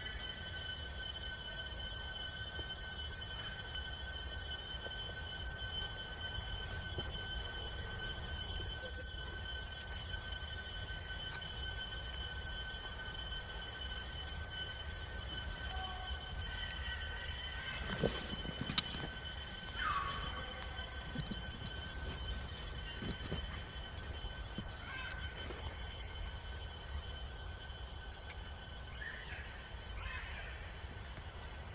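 Steady outdoor background: a constant high-pitched drone over a low rumble. Two-thirds of the way through come a couple of short knocks and a brief call that falls in pitch.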